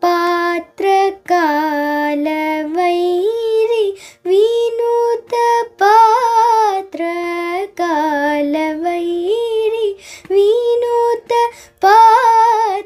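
A young girl singing a Carnatic melody in raga Behag, unaccompanied, in short held phrases with quick breaths between them.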